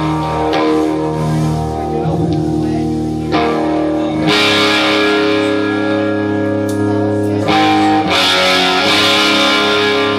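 Live rock band's amplified electric guitars and bass holding ringing, sustained chords, with cymbals washing in about four seconds in.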